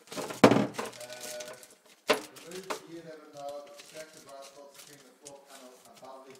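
Indistinct talking, with a loud burst of handling noise about half a second in and a sharp knock just after two seconds.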